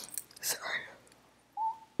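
Soft breathy noises from a woman with her hand over her mouth, a pause, then one brief thin whistle-like tone, slightly falling, just before the end.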